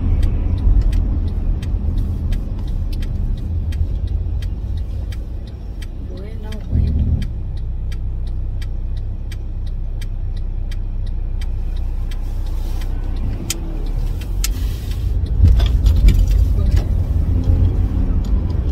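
Steady low rumble of a car's engine and tyres heard inside the cabin while driving, swelling briefly near the end. Faint regular clicking, about three ticks a second, runs through the first two-thirds.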